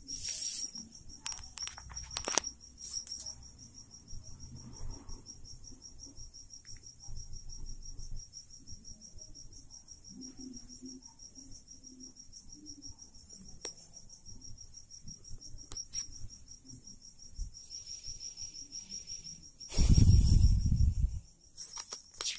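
A cricket trilling steadily at a high pitch throughout, with small scratches and taps of a pen writing on paper. Near the end comes a loud rustle of the paper sheet being handled.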